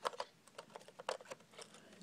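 Quiet, irregular small clicks and taps of a laptop memory stick being handled and fitted into the laptop's memory slot, about a dozen in two seconds.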